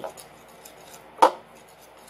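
A utensil knocking against a mixing bowl while stirring tempura flour batter: one sharp clink about a second in, with faint light ticks around it.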